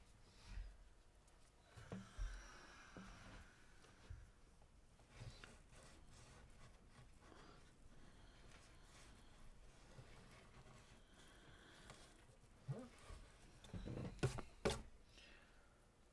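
Near silence: room tone with faint, scattered soft knocks and rubbing from hands cleaning glue squeeze-out around a clamped guitar bridge, with a few slightly louder handling noises near the end.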